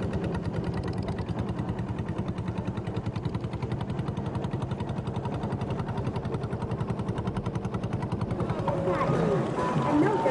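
A boat engine chugging at a rapid, steady beat. Near the end, pitched sounds, voices or music, begin over it.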